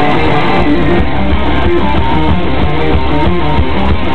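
A metal band playing live: heavy distorted electric guitars over bass and drums, in a passage with no singing. It is a loud, lo-fi crowd recording with a muffled, dull top end.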